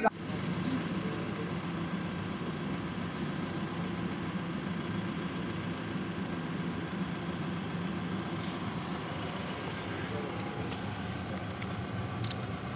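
An engine running steadily at idle, an even low hum with no change in speed.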